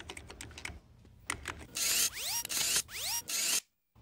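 Cartoon sound effects: quick computer-keyboard clicks, then an electronic retina-scanner sound, a hiss with two rising whistling sweeps, which cuts off suddenly shortly before the end.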